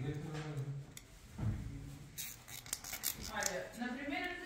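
Low, indistinct male muttering, broken about halfway through by a quick run of small sharp clicks as the fibre-splicing parts and tools are handled.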